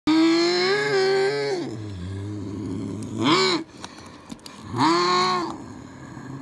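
A person's voice making monster-truck engine noises with the mouth. A long held drone sinks into a low growl, then come two short rising-and-falling 'uh' calls.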